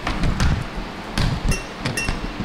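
Handling noise: a few dull bumps and knocks, with light clinks, as the camera is moved about and a glass incense-holder cylinder is handled on a counter.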